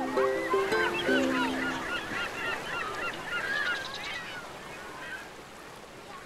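The last few held notes of a music track, over a flock of birds calling over one another with many short rising and falling calls. The calls thin out and fade away past the middle.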